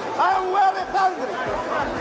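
A man speaking: a voice talking continuously, with only speech to be heard.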